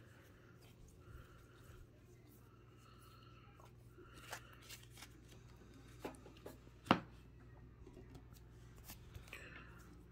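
Stack of Topps Gallery baseball cards being handled and sorted in the hands: soft rustling and scattered light clicks of card edges, the sharpest about seven seconds in, over a faint steady low hum.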